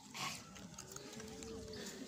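Faint outdoor background in which a distant farm animal gives one drawn-out call about a second in, with faint voices.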